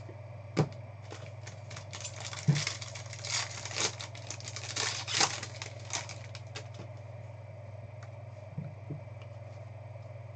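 Foil trading-card pack wrapper crinkling and tearing as it is opened: a run of crackly rustles lasting several seconds. Before it comes a sharp click as a plastic card holder is set down, and a few soft clicks of handling come near the end.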